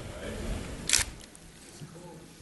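A single camera shutter click about a second in, as a posed photo is taken.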